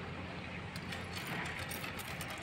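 Irregular light metallic taps and clicks start just under a second in, over a steady low hum: slag being knocked off a fresh stick-weld bead on steel plate.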